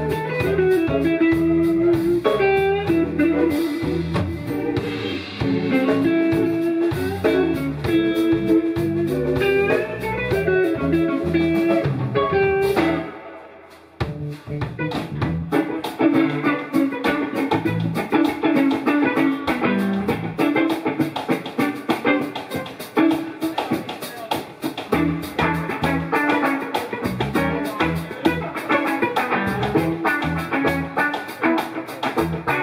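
Live instrumental band: a lead electric guitar playing a melody with bent and sliding notes over electric bass and a drum kit. About thirteen seconds in the band drops out for about a second, then comes back in with busier drumming.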